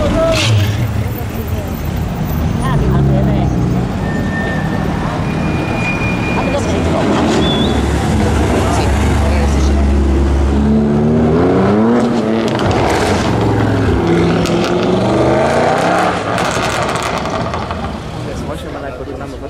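Car engines running and accelerating through a tight corner one after another in slow traffic. About eleven seconds in, an engine revs up and down several times.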